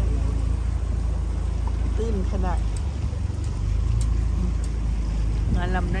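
A boat's motor running steadily as a low rumble while the boat moves along the river.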